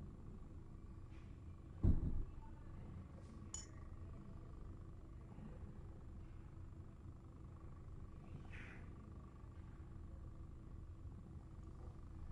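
Quiet room with a steady low hum, broken by a single sharp knock about two seconds in and a faint brief sound near the end.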